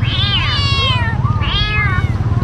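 Kittens meowing: two long, high-pitched meows, the second starting about one and a half seconds in.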